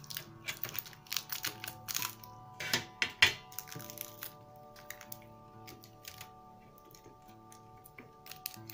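Small scissors snipping and crinkling clear adhesive tape: a quick run of sharp clicks and rustles in the first few seconds, then only sparse soft ticks and rubbing as the tape is pressed down by hand. Quiet background music with long held notes underneath.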